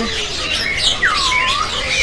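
Caged poksay Hongkong laughingthrush singing in full voice: a run of whistled notes that slide up and down, with one deep swooping whistle that dips and rises again about a second in.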